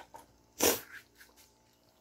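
A single short, breathy burst from a person, like a sneeze or a huff of breath, about half a second in, followed by a few faint clicks.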